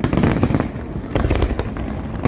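Aerial fireworks display going off: a rapid string of bangs and crackle, densest right at the start and again from about a second in.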